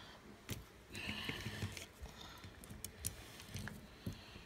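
Metal parts of a vintage Salewa crampon being handled while its length adjustment is worked: a few sharp clicks and clinks, about half a second in, around three seconds and near the end, with soft rustling between.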